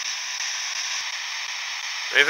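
A steady hiss like static, with faint unchanging high-pitched tones running through it.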